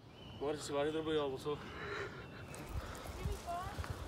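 A person's voice, faint and off-mic: one drawn-out vocal sound with a wavering pitch about half a second in, then a few quieter voice sounds and soft knocks.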